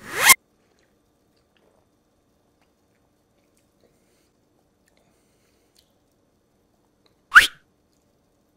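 A short, loud slurp as cola is sipped from a glass, then quiet with a faint steady hum. Near the end comes one brief sharp mouth sound with a quick rising pitch.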